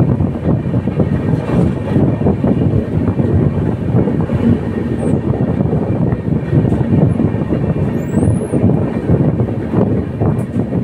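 Passenger train coaches running on track, a steady rumble and clatter of wheels on rails heard from inside the coach at an open window.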